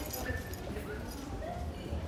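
Footsteps on a paved stone street, an even walking pace of about two steps a second, with faint voices in the background.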